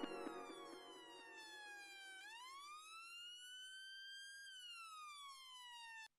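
A faint siren wailing: its pitch falls slowly, rises again, then falls once more near the end. Faint echoes of the finished music die away beneath it at the start.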